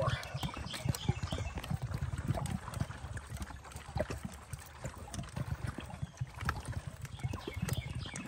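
Irregular light clicks and scrapes of a nut driver turning the screw of a stainless worm-gear hose clamp on a pool pipe fitting, loosening the clamp to free a temperature sensor, over a low rumble.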